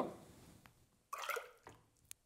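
Liquid ceramic glaze sloshing briefly about a second in, as a small terracotta cup held in metal glazing tongs is moved under the surface in a bucket of glaze. The sound is faint, with a light tick just before it.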